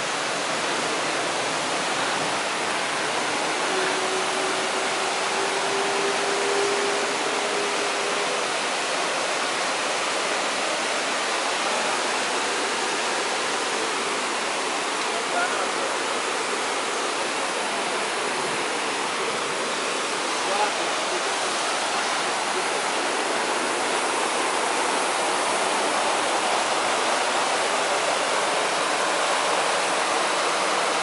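Trevi Fountain's water cascading over its rock ledges into the basin: a steady, even rush of falling water.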